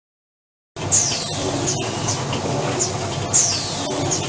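AFM-540A semi-automatic box-lid making machine running: a steady mechanical clatter that starts suddenly just under a second in, with a short high falling squeal repeating about every two and a half seconds.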